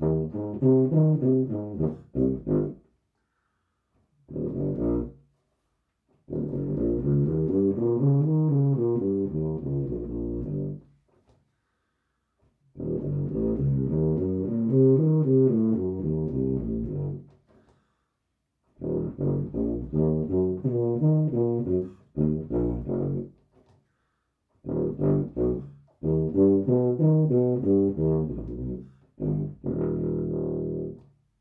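Rotary-valve tuba playing scales in F an octave low: a series of phrases of about five seconds each, the notes stepping up and then back down, with short breaks between phrases.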